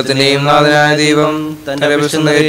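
A man's voice chanting a liturgical prayer in Malayalam, intoned on a nearly steady held note, with a short break near the end.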